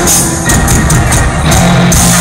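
Live rock band playing loudly through an arena sound system.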